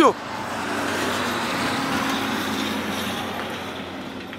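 A motor vehicle passing: a steady engine hum under a rushing noise that swells over the first couple of seconds and then slowly fades.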